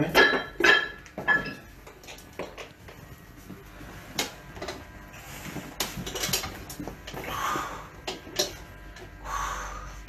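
Loaded barbell with iron weight plates clanking as a 60 kg bar is handed off over a weight bench for a bench press: three or four loud, ringing clanks in the first second and a half, then scattered lighter clinks as it is pressed. A couple of short breathy sounds come near the end.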